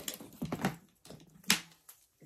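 Leather bag straps being handled and held up, their metal clasps clicking a few times, with the sharpest click about one and a half seconds in.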